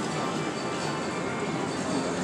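Slot machine music and electronic tones, steady and without breaks, over the continuous din of a casino floor.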